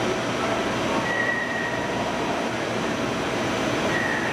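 Mazak Megaturn vertical turning center running: a steady mechanical hum and hiss, with a brief high whine about a second in.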